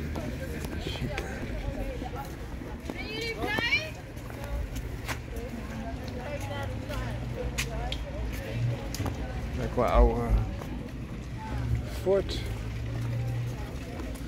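Indistinct voices of people talking nearby over a low steady hum. The voices are loudest about ten seconds in.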